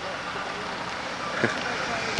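A station wagon driving slowly past at low speed, giving a steady, even noise.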